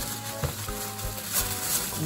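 Rustling of a clothing package's wrapping being handled and opened by hand, with a couple of sharper crackles, over soft background music.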